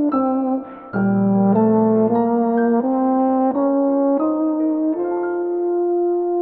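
A brass instrument playing a slow melody with piano, one held note after another, with a short break just before one second in and a long held note from about five seconds in.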